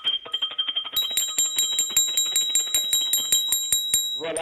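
Small brass mortar rung with its brass pestle, struck rapidly in a steady rhythm of about seven strikes a second, each stroke ringing like a bell. The strikes turn brighter and louder about a second in.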